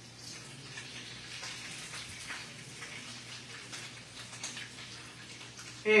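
Rolled tacos (taquitos flauta) frying in hot oil, a steady crackling sizzle.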